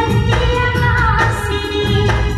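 Indian film song playing: a voice singing a melody over instrumental backing with a steady beat.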